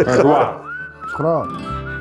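A whistled melody, a single thin wavering note held for long stretches with brief breaks, running under bits of a man's speech.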